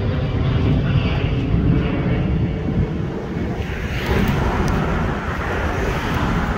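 Steady low rumble of highway traffic outdoors, with a brighter tyre-like hiss rising about four seconds in as a vehicle goes by.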